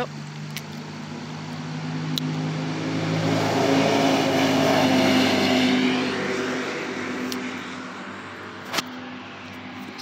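A side-by-side UTV's engine passing by on the road: it grows louder, is loudest about halfway through, then fades away. A single sharp click comes near the end.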